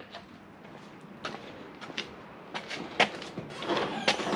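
A few light clicks and knocks from parts being handled and set down on a workbench, the loudest about three seconds in, with a short rustle near the end.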